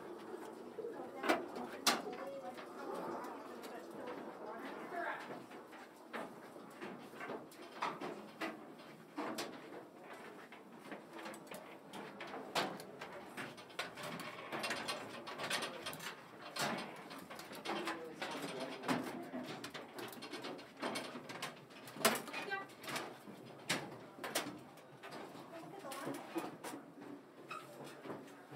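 Irregular footsteps and sharp knocks on a submarine's metal deck and fittings, with low murmured voices underneath.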